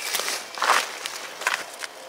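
A few footsteps through low ground plants and leaf litter on the forest floor, heard as short rustles and soft crunches underfoot.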